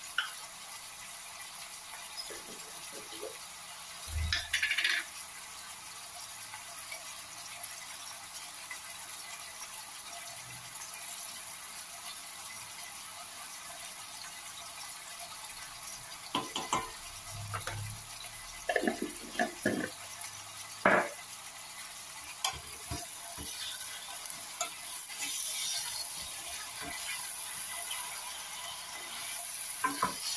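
Vegetables and spices sizzling steadily in oil in a stainless steel pot, with a wooden spoon stirring and knocking against the pot. There is a knock about four seconds in and a run of sharp clatters a little past halfway, the loudest of them around two-thirds of the way through.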